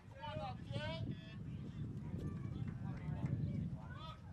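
Indistinct background voices in about the first second, then a low rumbling background noise with a few faint clicks.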